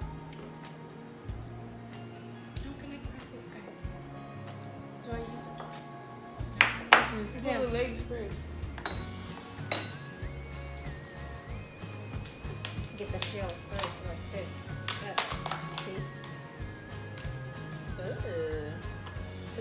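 Background music with a steady bass line and held notes that step in pitch. Over it come sharp clicks and clinks from the table as seafood is pulled apart by hand, loudest about seven seconds in.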